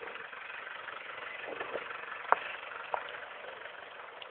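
Steady rushing noise of travel on a wet road, with two sharp clicks about two and a half and three seconds in.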